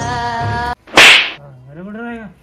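Music with held notes cuts off abruptly, and a moment later a loud, sharp swishing sound effect hits, fading within half a second. It is followed near the end by a short tone that rises and then falls.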